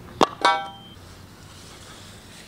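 Two quick clanks of a thin metal pole, a quarter second apart, the second ringing briefly before it dies away.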